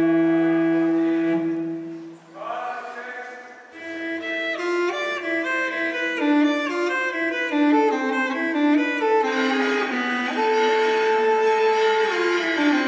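Background music on bowed strings: a held chord that fades out about two seconds in, then a melody of moving notes.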